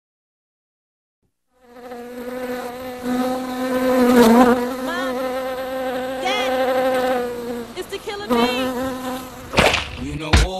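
Bee buzzing: a steady hum with a few brief swooping wobbles in pitch, starting after about a second and a half of silence and dropping out briefly near 8 s. A loud sharp hit near the end, as the hip-hop track's beat comes in.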